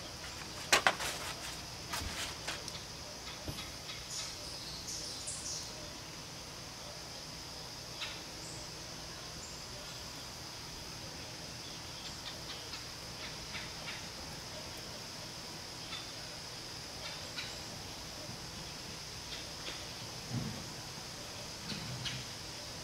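Scattered light clicks and taps of food and kitchen items being handled on a counter, over a steady high-pitched hum of outdoor ambience.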